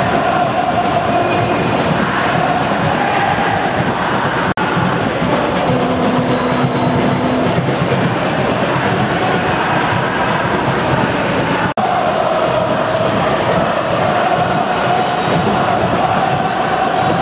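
Large stadium crowd of home supporters singing together, a loud steady mass of voices carrying a slow melody, briefly cut twice.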